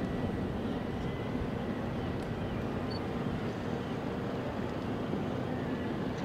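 Steady low rumble of a large cruise ship's engines and machinery as she sails past, level throughout with no horn.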